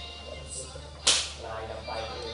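A single sharp crack, like a whip snap, about a second in.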